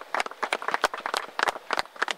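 A small group of people clapping, a scattered, uneven run of hand claps several a second.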